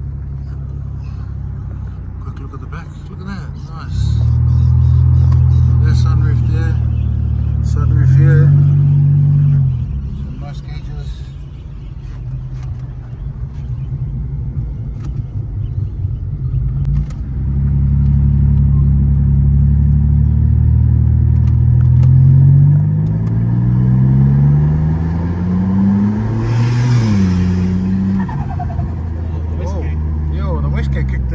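Nissan Stagea's turbocharged engine heard from inside the cabin on a drive, pulling hard for a few seconds, easing off, then pulling again. Near the end it climbs steadily in pitch through a long acceleration, with a rushing hiss at the top, and drops sharply as the throttle comes off.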